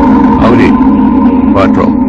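A man's voice calls out twice, briefly, about half a second in and again near the end, over a steady held music chord.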